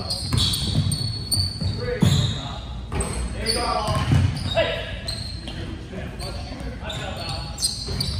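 A basketball bouncing repeatedly on a hardwood gym floor, with sneakers squeaking, in a large reverberant gym.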